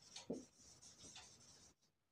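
Faint strokes of a marker pen writing on a whiteboard, a few short scratches and squeaks that die away near the end.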